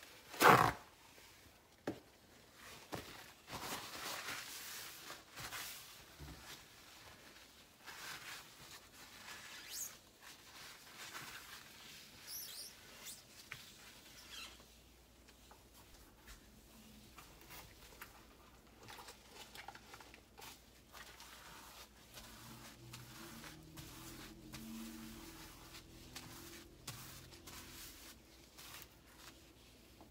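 Cleaning on a glass-ceramic stovetop: a sharp knock about half a second in, then scattered clicks and scratchy rustling and scraping of gloved hands and cleaning materials on the glass, dying down after about fourteen seconds.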